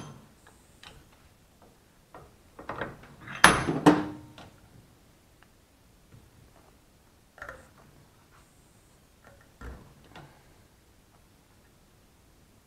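Hand tools and a workpiece being handled at a bench vise: a few scattered knocks and clicks, the loudest a cluster of sharp clacks about three to four seconds in, then a few softer knocks later.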